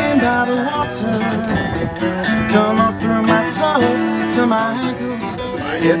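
Acoustic guitars strumming and picking a song, an instrumental stretch between sung lines.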